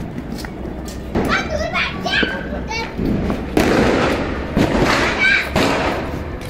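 Children shouting and calling out, with a few sharp knocks and a stretch of rushing noise about halfway through.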